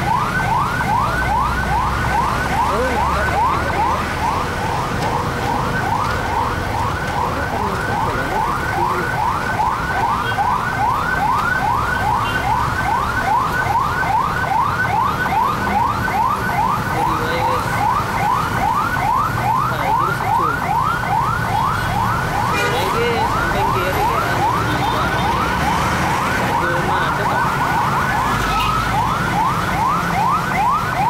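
Electronic siren in a fast yelp, each note a quick rising sweep, about three a second, going on without a break at a steady loudness, over the low running of motorcycle and traffic engines.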